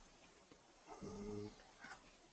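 Near silence, broken about a second in by a brief, faint, steady-pitched hum of a person's voice lasting about half a second.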